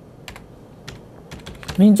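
Computer keyboard: a handful of separate short keystrokes, entering a stock code to call up a new chart, followed by a man starting to speak near the end.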